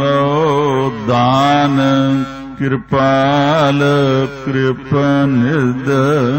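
A man chanting a Sikh Gurbani hymn in long held notes that waver in pitch, with short breaths about a second, two and a half seconds and four and a half seconds in.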